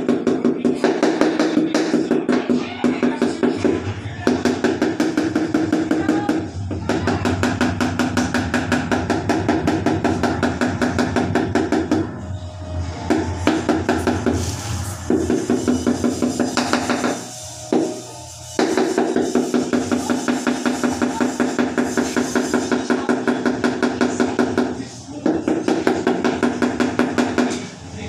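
Claw hammer striking a steel chisel in quick, steady blows, about five a second, chipping at concrete, with a few short pauses between runs of strikes.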